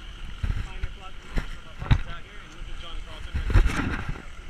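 Wind buffeting a handheld camera's microphone in uneven gusts, the strongest about two seconds in and near the end, over faint distant voices.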